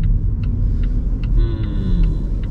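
Cabin noise of a Volvo V60 B4 on the move: a steady low rumble from the road and its 2-litre turbo four-cylinder, with a light, regular ticking about two or three times a second.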